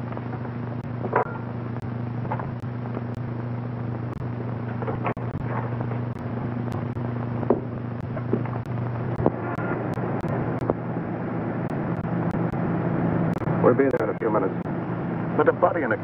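Steady low hum and hiss of an old optical film soundtrack with scattered clicks and a few brief, faint voice sounds; voices pick up near the end.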